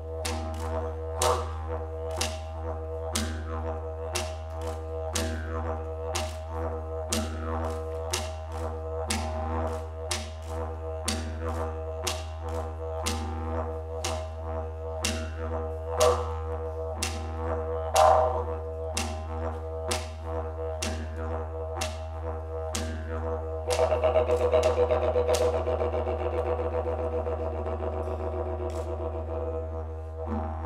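Didgeridoo playing a steady low drone, with sharp taps about twice a second. About 24 s in, the taps drop away and the drone grows louder and brighter for a while.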